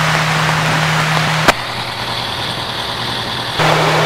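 Parked fire engine idling with a steady low hum. About a second and a half in there is a sharp click and the hum drops out for about two seconds, then returns.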